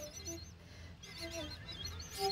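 Faint birds chirping in a pause between bamboo flute phrases, with a few soft short low tones. The flute note before it cuts off at the very start.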